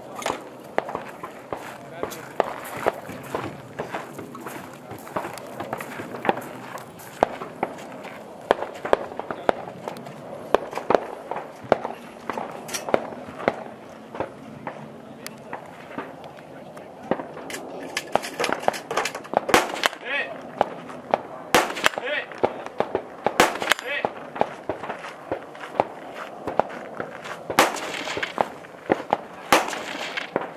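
Gunfire at a shooting match: many sharp shots at uneven intervals, heavier and in quicker strings in the second half, over a steady murmur of voices.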